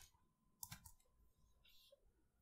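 Near silence with a few faint clicks about two-thirds of a second in, from a computer keyboard and mouse being used.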